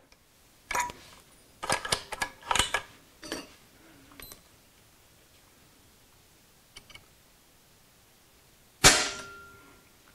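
Mechanical clicks and knocks as an EDgun air rifle's action is cocked and handled for a trigger-pull test, then, about nine seconds in, the trigger breaks and the hammer releases with one sharp, loud crack that rings briefly.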